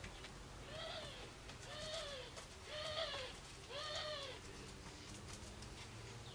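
A bird calling four times, about a second apart, each call a short rise and fall in pitch.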